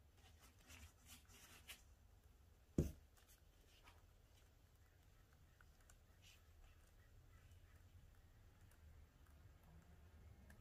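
Near silence with faint handling sounds of a paint-covered stretched canvas being tilted in gloved hands: soft rustles and light clicks, and one sharp knock a little under three seconds in.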